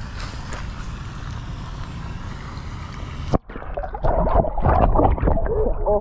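Steady wind noise on the microphone, then, after a sharp click about three and a half seconds in, water splashing and sloshing at the bank as a hand plunges into the pond.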